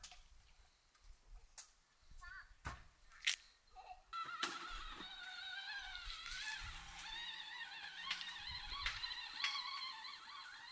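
Blood orange being peeled by hand: a few sharp snaps and crackles of rind and pith being torn off, the loudest about three seconds in. About four seconds in, music with wavering high tones comes in and carries on.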